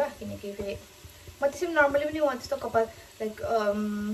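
A woman's voice in short phrases, about a second and a half in and again near the end, with a quieter gap near the first second.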